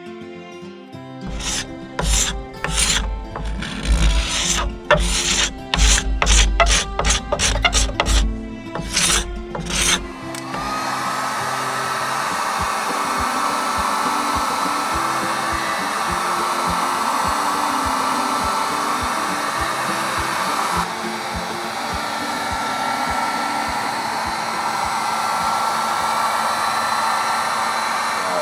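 Background music with a beat for about the first ten seconds. Then a heat gun switches on, its whine rising briefly before it settles into a steady rush of hot air. It is blowing on an Osage orange bow stave to heat it so the twist can be bent out.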